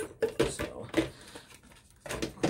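A few short knocks and clatters of small items being handled and set down, in the first half and again about a second in.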